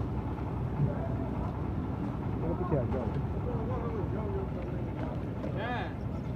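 Concrete mixer machine running steadily with a low, even rumble, while men's voices call out about halfway through and again near the end.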